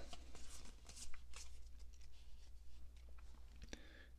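Faint rustling and light clicks of Pokémon trading cards being handled and slid against each other while the cards of a freshly opened booster pack are sorted, over a low steady room hum.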